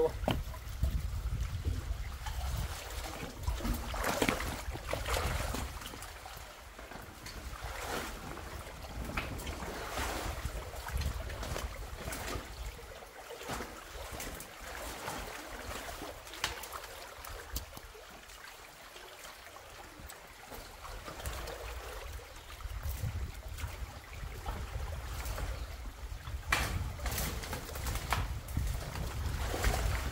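Water splashing and dripping as handfuls of sticks and mud are pulled out of a culvert clogged by a beaver dam, with scattered knocks and scrapes of wood over a steady low rumble. A cluster of louder knocks comes near the end.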